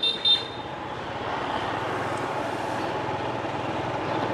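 Steady traffic and road noise on a city street, with a brief high horn toot right at the start.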